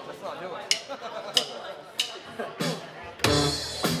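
Four sharp clicks about two-thirds of a second apart, a drummer counting in with his sticks. Just after three seconds a live band comes in together on guitars and drums, over background chatter.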